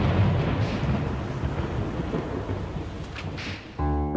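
A loud, deep rumbling noise with a hiss over it, starting suddenly and dying away near the end, where piano music comes in.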